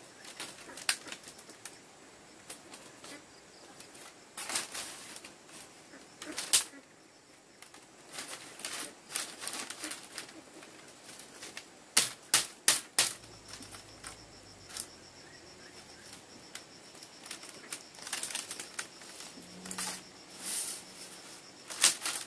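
Split bamboo strips rustling, slapping and clacking against each other as they are woven by hand into a flat lattice panel. The clacks come irregularly, with a quick run of four loud ones around the middle.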